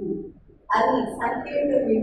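A woman speaking, with a short pause about half a second in before her talk resumes.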